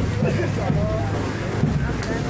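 Outdoor street procession ambience: crowd voices over a steady low rumble, with a dull thump about once a second.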